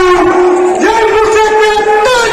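A man's voice over the stage loudspeakers, drawing out long held notes in a sung, chant-like delivery, with a short upward glide into a new note about a second in.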